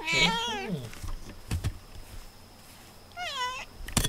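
A cat meowing twice: one call at the very start and another about three seconds in.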